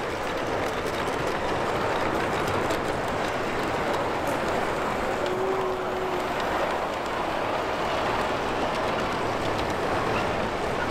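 LGB G-scale model train rolling along the track, a steady running noise with faint light clicks. A brief low steady tone sounds about five seconds in.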